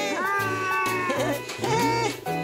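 Background music for a children's cartoon, with a cartoon vocal sound effect that slides up and down in pitch over it.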